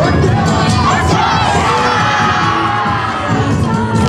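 Many voices shout together in one long group call, held for about two seconds, over loud dance music.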